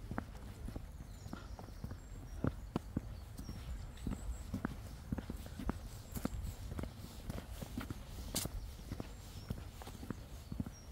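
Footsteps of a person walking at a steady pace on a tarmac footpath, about two steps a second, over a steady low rumble. One sharper click stands out about eight seconds in.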